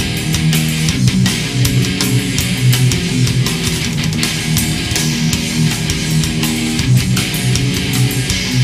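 Death/thrash metal recording: distorted electric guitars riffing over fast drums and cymbals, with no vocals.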